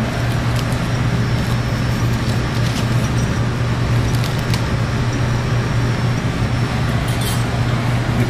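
Steady ventilation hum in a commercial kitchen, with a low droning note, and a few faint light taps and paper rustles as hands press parchment paper down on a cutting board.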